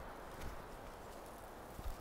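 Two soft, low thuds about a second and a half apart over a steady outdoor background hiss.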